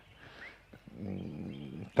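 A man's low, drawn-out hesitation hum held for about a second in the second half, and a faint short bird chirp before it.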